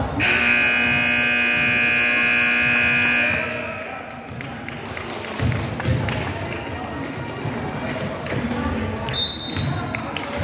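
Gym scoreboard horn sounding one steady, loud blast of about three seconds, then a basketball bouncing on the hardwood court.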